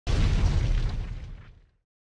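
An explosion sound effect: a sudden deep boom that fades away within about two seconds.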